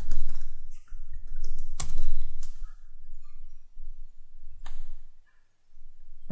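Typing on a computer keyboard: irregular runs of keystrokes that thin out to a few separate clicks over the last few seconds, over a steady low hum.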